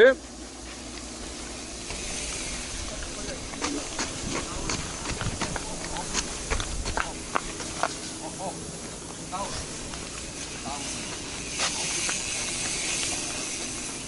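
Mountain bike rolling over a dirt pump track and wooden ramps: a steady hiss of tyres on dirt, with scattered clicks and rattles from gravel and the bike through the middle.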